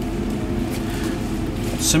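OMAX EnduraMAX 50-horsepower triplex direct-drive pump running: a steady hum holding several steady tones.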